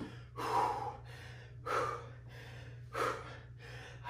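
A man's heavy breaths from hard exertion, three forceful breaths about a second and a quarter apart.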